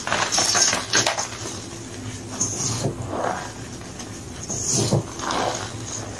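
Bare feet squeezing and crushing soft gym chalk blocks and powder in a bowl: a few separate presses, each a short crunch or squeaky creak as the chalk compacts.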